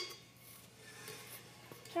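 A single sharp click right at the start, then faint handling noises.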